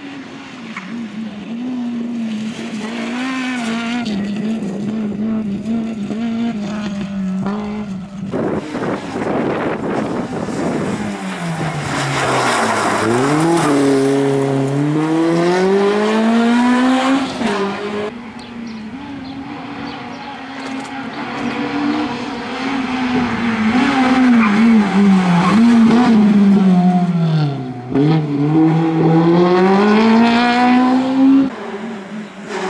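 Honda Civic Type R rally car's four-cylinder engine revving hard on a rally stage. It holds high revs, drops in pitch twice as the car slows, then climbs again as it accelerates away.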